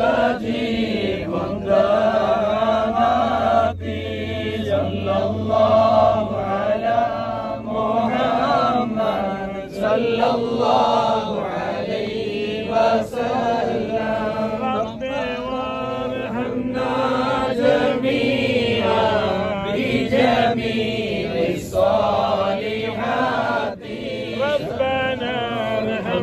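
Men's voices chanting an Arabic devotional chant together in a continuous, melodic line.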